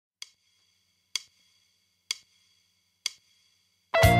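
Four evenly spaced sharp clicks, a little under a second apart, counting in the song. Full band music comes in on the next beat right at the end.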